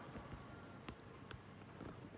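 A few faint, sharp clicks, two about a second apart and a softer knock near the end, over quiet room tone.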